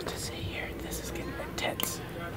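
A person whispering in short hushed phrases.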